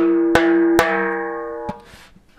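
Frame drum played in a simple, sparse pattern of bass tones and high tones, a few strokes about half a second apart. The open bass tone rings on with a clear pitch between strokes and fades out.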